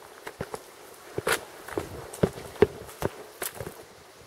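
Footsteps on a rocky gravel trail with a trekking pole's tip striking the ground, an uneven run of sharp taps and clicks, about three a second. The pole is knocked on the ground to warn off snakes.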